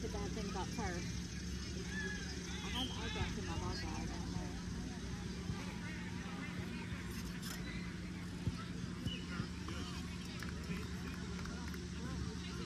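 Distant shouts and calls from players and spectators across outdoor soccer fields, over a steady low hum, with a few sharp knocks in the second half.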